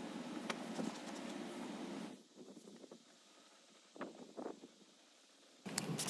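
Microfiber towel rubbing over a vehicle's interior door trim, a soft rustle with light ticks of handling. A bit past two seconds in it cuts off to near silence, broken only by a couple of faint taps.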